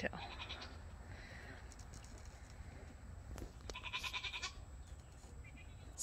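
A goat bleating faintly in the background: a short, quiet call just after the start and one longer, drawn-out bleat a little past the middle.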